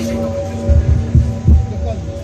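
Several low, muffled thumps from the handheld phone's microphone being jostled, over a steady electric hum from the stage amplification and faint crowd voices.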